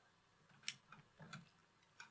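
Near silence: room tone, with a faint sharp click a little under a second in and a weaker click with a brief low murmur about a second later.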